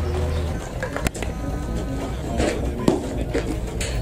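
Voices with music underneath, and a single sharp knock about a second in, with another near three seconds.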